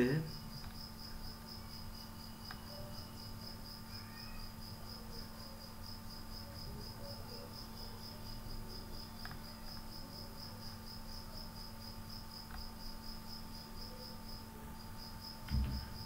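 A cricket chirping steadily in rapid, evenly spaced pulses, faint under a steady low electrical hum. A soft thump near the end.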